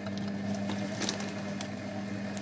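SilverCrest Monsieur Cuisine Edition Plus food processor running at speed 1: a steady low motor hum with a few faint light ticks, stirring the escarole soup as it heats, set to 100 °C.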